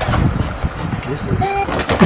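Cardboard shipping box being handled and opened: irregular scraping, rustling and knocking of cardboard, with a sharp click near the end.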